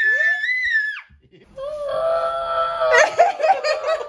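Excited children's voices reacting to a surprise: a very high-pitched scream that cuts off about a second in, then after a short pause a long drawn-out cry, breaking into bursts of laughter near the end.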